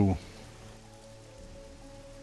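Quiet ambient background music: a few low notes held steady under an even, soft hiss.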